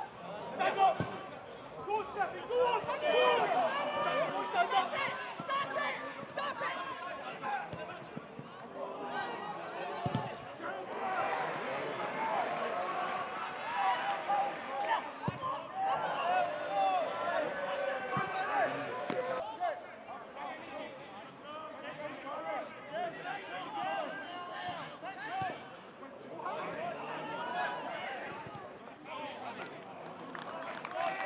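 Match sound at a football ground: overlapping, indistinct shouts and calls from players and spectators, with a few sharp thuds of the ball being kicked.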